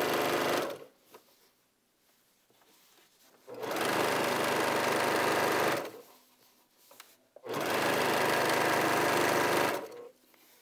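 Baby Lock Accomplish sewing machine stitching a quarter-inch seam through fabric, batting and backing. It runs in three spells: the first stops within the first second, then it sews again for about two seconds and once more for about two seconds near the end, with near-quiet pauses between them while the fabric is guided.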